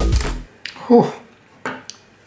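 Electronic background music that cuts off about half a second in. Then comes a brief voiced sound, and near the end two light metallic clicks as a small screwdriver and the folding knife are set down on a wooden bench.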